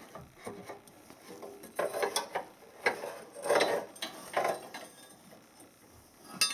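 Dipstick tube of a Toyota 5.7 V8 being worked loose and pulled out of its bore in the engine by hand: a handful of short, irregular scrapes and clicks.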